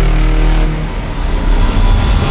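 Intro sound design: a loud, deep, steady rumble with a hiss on top, easing slightly about a second in and swelling again near the end.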